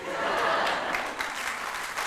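Audience applause that swells in right after a punchline, then eases off slightly.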